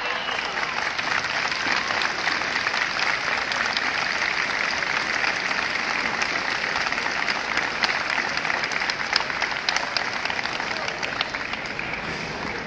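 A group of people applauding steadily, with many separate hand claps standing out, easing off slightly near the end.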